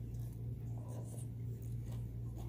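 A person chewing a mouthful of chilaquiles eaten by hand, faint and scratchy, over a steady low hum.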